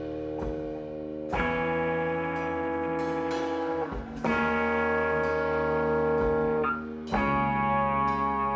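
Slow live drone-rock instrumental: ringing electric guitar chords over a sustained low drone. A new chord is struck about every three seconds, each marked by a sharp percussive hit, and left to ring.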